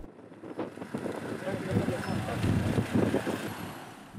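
Roadside field sound: a minibus engine running, swelling and then fading, with wind on the microphone and faint voices underneath.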